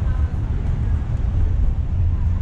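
Steady low rumble of outdoor city noise, with faint voices in the background.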